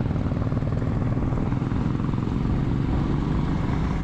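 Royal Enfield Himalayan's single-cylinder engine running steadily under way on the road, heard from the rider's position with a fast, even thumping pulse.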